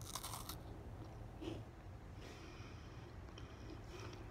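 A bite into a chocolate mint biscuit: a short crunch at the very start, then faint chewing.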